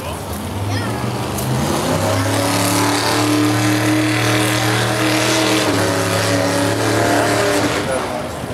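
A motor engine running steadily with a low hum. It grows louder from about half a second in, shifts slightly in pitch a few times, and dies away just before the end.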